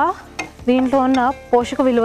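Spatula stirring food in a non-stick frying pan, with a light sizzle and a sharp click about half a second in. A woman talks over it for most of the rest.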